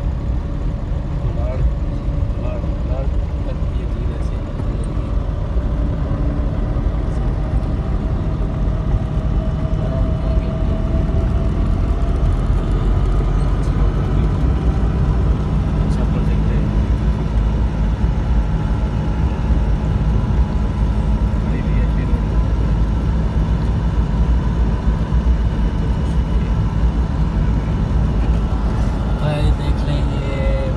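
Car cabin noise while driving: a steady, deep rumble of engine and tyres on the road, heard from inside the car.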